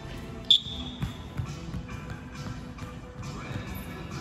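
Indoor football game on a sprung wooden hall floor: a football thudding on the boards and a sharp, high squeak about half a second in, with music playing in the background.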